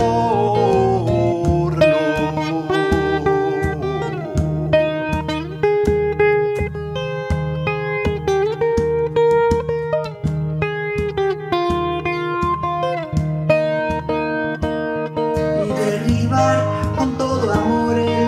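Acoustic guitar playing an instrumental passage: a steady plucked pulse with held notes ringing over it, some of them sliding in pitch.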